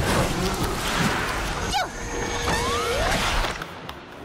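Cartoon sound effects for a storm of flying pastrami: a dense rushing, rumbling barrage with a few whistling pitch glides, dying down near the end.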